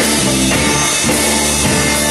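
Live rock band playing: electric guitar, bass guitar and drum kit.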